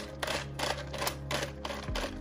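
Plastic ratchet leg joints of a Mattel Epic Roarin' Tyrannosaurus Rex figure clicking as the legs are swung, a quick irregular series of clicks.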